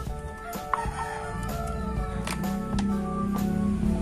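Background music with sustained steady tones, a low held note coming in about halfway.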